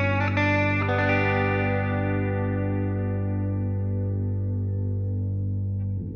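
Closing bars of a rock track: an effected electric guitar plays a few notes, then lets a final chord ring out slowly over a steady low held note.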